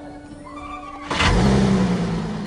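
A Volkswagen Passat's engine starting with a sudden burst about a second in and settling into a steady run. It is started by remote start rather than by anyone in the car.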